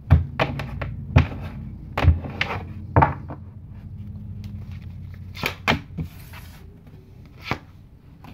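Tarot decks and their boxes handled on a tabletop: about ten light knocks and taps as they are set down, picked up and moved, most of them in the first three seconds, over a low steady hum.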